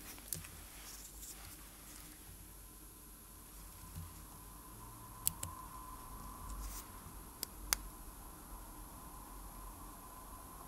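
Faint handling noise of a quartz watch movement and its winding stem being worked between fingertips, with a few small sharp clicks: a pair about five seconds in and another pair about two seconds later.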